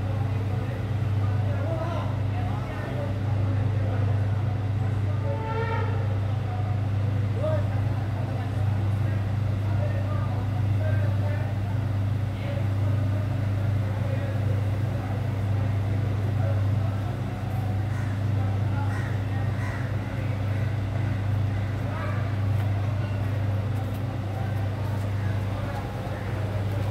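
A loud, steady low hum with several steady tones above it, like a machine running, and people talking in the background.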